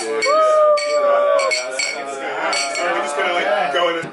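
Drinking glasses clinking together several times in a toast. One person holds a long cheer for about a second near the start, and then there are excited voices and laughter.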